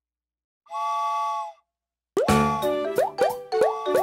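A cartoon steam-train whistle sounds once for about a second, a chord of several steady tones. About two seconds in, bouncy children's music starts with quick upward-swooping notes, louder than the whistle.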